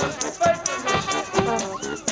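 Street brass band of trombones, trumpets and saxophones playing a tune over a beat of about two strokes a second, with a short rising slide about a second and a half in.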